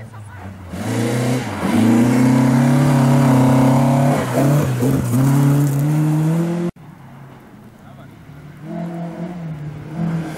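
Rally car engine at high revs passing at speed, its pitch climbing in steps through gear changes with a brief dip about five seconds in. The sound cuts off abruptly about two-thirds of the way through, and the next rally car's engine is then heard approaching, growing louder.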